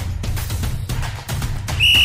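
Background music with a steady beat, then one short, high, steady whistle blast near the end.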